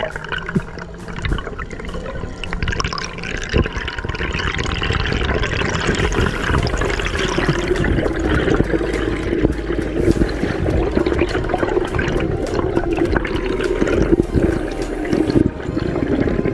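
Underwater bubbling and rushing water at the camera as air bubbles stream past it, with many small clicks and crackles throughout; it grows louder about a quarter of the way in.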